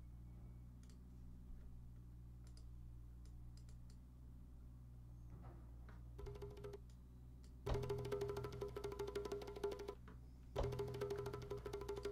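A rapid bongo roll sampled from a record, played back twice from a sampler: once for about three seconds, then again after a brief gap. Before it there is a low steady hum with a few faint clicks and a short snippet of the sample.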